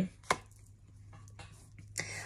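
Tarot cards being handled on a table: one sharp tap about a third of a second in, then a few faint clicks, over a low steady hum.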